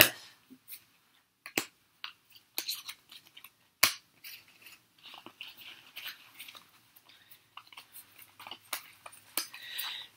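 Trading cards being handled and laid down on a cloth playmat: scattered soft clicks and rustles, with a couple of sharper card taps early on.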